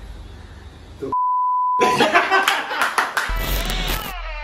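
A steady high-pitched censor bleep lasting under a second, about a second in, with all other sound cut out under it. Then intro music starts, with sharp glitchy hits.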